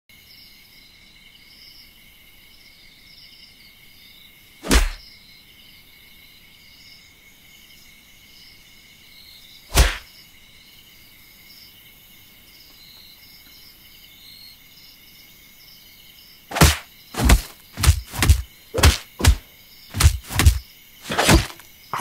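A steady high chorus of insects chirping underneath, broken by loud sharp thumps: one about five seconds in, another about ten seconds in, then a quick run of about ten thumps near the end.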